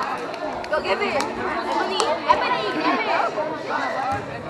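Many people talking over one another in a school gymnasium, with a few sharp taps about one and two seconds in.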